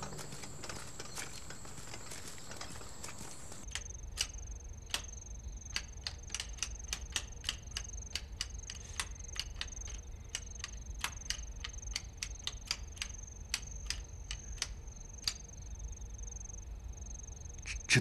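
Abacus beads clicked in quick irregular runs, several a second, as sums are reckoned, over a steady high chirring of crickets. The clicking starts about four seconds in.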